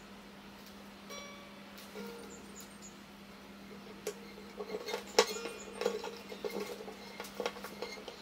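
A nylon string being threaded through a classical guitar's tie-block bridge and handled for knotting. A faint ringing string tone comes about a second in, then a run of small clicks and scratchy rustles from the string and fingers in the second half, over a steady low hum.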